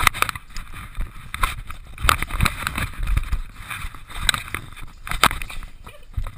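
Irregular knocks, clicks and scraping, with rustling in between, as a puppy tugs and chews at a rubber ring toy pressed against a GoPro camera.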